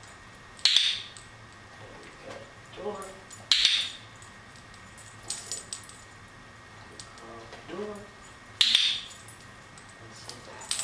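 A dog-training clicker clicking three times, sharp and loud: about a second in, at about three and a half seconds, and near the end. Each click marks the dog's correct response in a shaping exercise.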